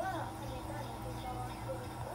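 Indistinct voices in the background over a steady low hum.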